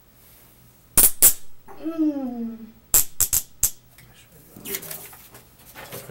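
Sharp clicks or knocks in two groups, two about a second in and four more around three seconds in. Between them is a short drawn-out voice sound that falls in pitch.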